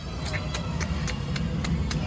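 Outdoor amusement-park background noise: a steady low rumble with a run of faint clicks or taps, about three a second.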